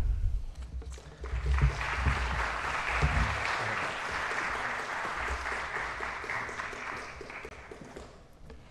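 An audience applauding. The clapping builds about a second in, holds steady, and fades away near the end.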